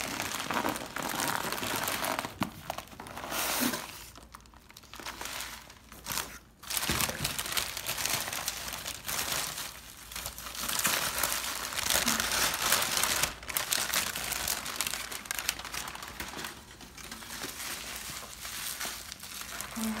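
Packing material being unwrapped by hand: paper and plastic wrapping crinkling and rustling in bursts with short pauses.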